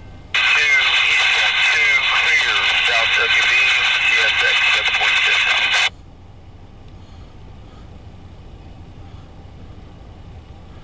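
A voice over a two-way radio comes on abruptly about half a second in, lasts about five and a half seconds, and cuts off sharply. A low steady rumble follows.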